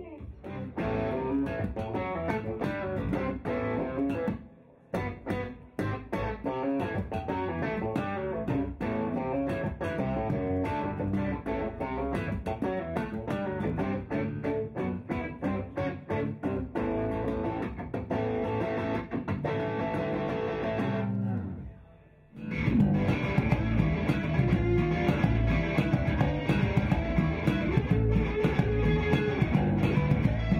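A band demo of an electric guitar, a Ruokangas single-cut with humbucking pickups, played over bass guitar. The music drops out briefly about five seconds in and again around two thirds of the way through, then comes back in louder and fuller.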